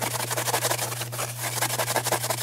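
Scouring pad scrubbed hard back and forth over a wet, burned-on stovetop, giving quick, even rasping strokes as the crusted grease is worked off.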